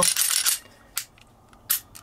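Kimber Micro 9 pistol being function-checked by hand: the slide racks with a brief metal-on-metal scrape, then a sharp click about a second in and another click near the end as the action is worked.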